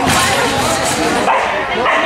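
A dog barking, with people talking in the background.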